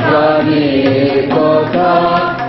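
Singing voices with harmonium and tabla accompaniment: sustained, gliding sung lines over a steady harmonium drone, with light hand-drum strokes from the tabla.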